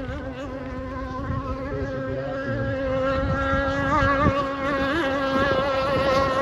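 Radio-controlled racing hydroplane model boat's two-stroke engine buzzing at high revs, its pitch wavering slightly and growing louder after the first few seconds.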